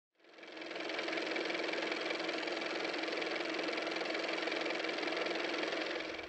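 A machine running steadily with a fast, even rattle, like a small engine, fading in over the first second.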